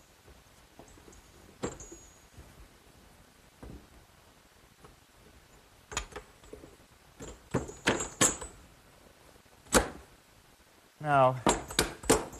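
Scattered light metal clinks and knocks as steel conduit and washers are worked into eye bolts on a wooden swing frame, with a cluster of ringing clinks about eight seconds in and a sharper knock near ten seconds.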